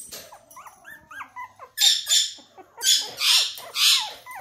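A puppy whimpering in a run of short, high squeaky whines, then giving several loud, harsh yips about a second apart.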